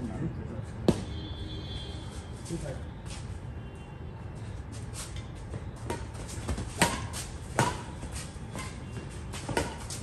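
Badminton rackets striking a shuttlecock in a doubles rally: a sharp hit about a second in, then a quicker run of hits, one every second or less, in the last four seconds.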